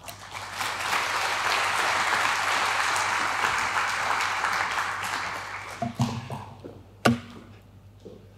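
Audience applauding, the clapping dying away after about five seconds, followed by a single brief knock near the end.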